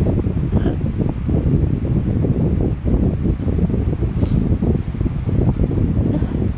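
Air blowing across the phone's microphone: a continuous low, fluttering rumble of wind noise.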